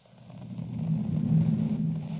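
A low, noisy sound effect under a news-segment title card. It swells up from silence to a peak about a second and a half in, then eases off.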